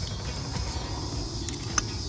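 A sharp click near the end, with a fainter one about midway, as the code-reset lever of a black key lock box is moved, over faint background music.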